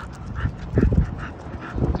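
A dog panting in a quick, even rhythm of about four breaths a second while it walks on the leash, with a few low thumps on the microphone about halfway and near the end.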